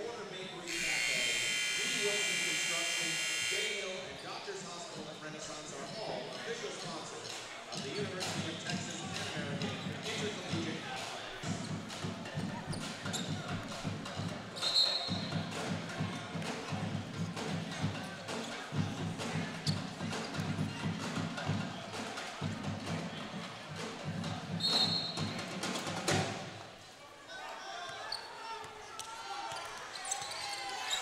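Basketball arena during a timeout: an arena buzzer sounds about a second in and holds for about three seconds. After that, PA music with a steady low beat plays over crowd chatter and cuts off suddenly near the end, with two short high-pitched tones in between.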